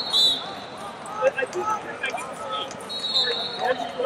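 Referee's whistle in a wrestling arena: a loud blast right at the start as the bout restarts, and another shrill whistle about three seconds in. Crowd and coaches' voices chatter throughout, with a sharp thud about a second in.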